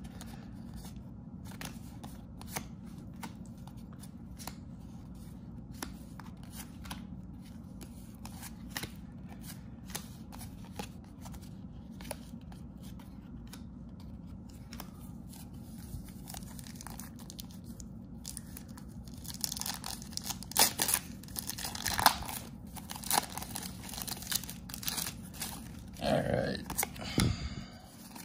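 Paper trading cards handled and sorted by hand: soft clicks and slides of card stock as cards are flipped and stacked, over a steady low hum. Near the end the handling gets louder, a stretch of brisk rustling and riffling.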